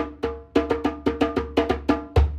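Djembe played with bare hands: a quick rhythmic pattern of ringing strokes, about six a second in the second half, with a deep bass tone at the start.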